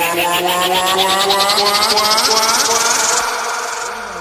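Vinahouse electronic dance music in a build-up: fast repeated hits that speed up, under sustained synth tones that bend upward in pitch, with no bass drum. It eases off slightly near the end.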